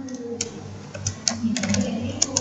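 Computer keyboard keys being pressed: a handful of irregular sharp clicks, with a quick run of them in the second half.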